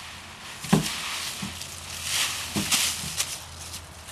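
Dry fallen leaves crunching and rustling as children move through a raked leaf pile, with a brief louder thump a little under a second in.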